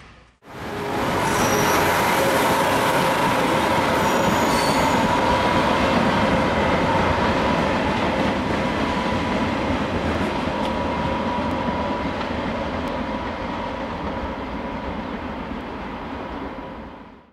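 A freight train of gondola cars rolling past, the wheels on the rails making a loud, even rumble with a steady squealing tone. It starts suddenly about half a second in and slowly grows quieter as the last cars go by.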